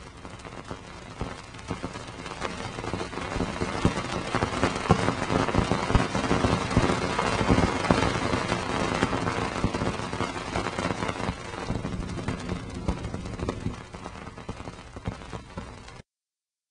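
Cassini spacecraft's Radio and Plasma Wave Science antenna recording played as sound: a dense crackle of pops from dust grains striking the spacecraft as it crosses Saturn's ring plane. The pops build to a peak midway and thin out near the end.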